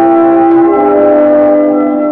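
A klezmer band playing live: long held notes sound together in chords, and the leading note steps down a little before the middle.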